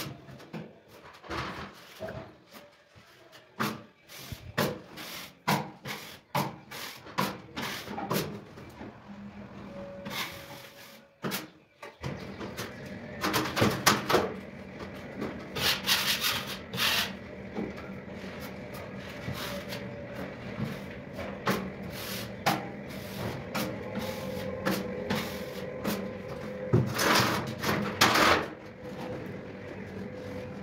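Steel drywall knife scraping joint compound across plasterboard joints in many short, sharp strokes. A steady hum joins in about twelve seconds in and stays under the strokes.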